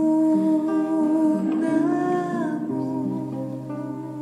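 Slow background music: long held melodic notes, one bending up in pitch and back down about halfway through, over soft shorter plucked notes.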